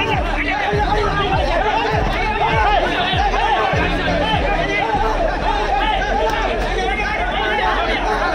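A crowd of men shouting and talking over one another in a scuffle, with a background music track under it. The music's low, falling bass hits repeat about once a second and stop about five seconds in.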